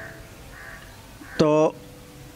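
A few faint, distant crow caws in a lull between speech, with a man's single short spoken word about one and a half seconds in.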